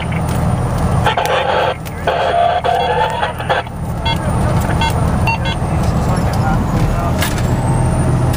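Steady engine and road rumble inside a fire truck's cab while it drives, with a stretch of garbled, noisy radio traffic in the first few seconds and a few short beeps after it.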